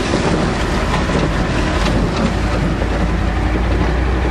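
A truck driving along: steady engine rumble and road noise with loose rattling, the low rumble growing stronger near the end.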